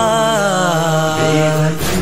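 Male voice singing a noha, holding one long note that sinks slightly in pitch, over a low sustained backing hum. A single beat lands near the end.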